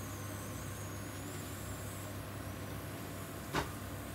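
Steady low hum of kitchen background noise, with one sharp knock near the end.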